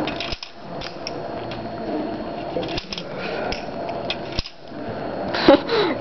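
Plastic Connect Four checkers clicking and clattering against each other as they are handled, a handful of sharp clicks spread over the few seconds, over a low murmur of room noise.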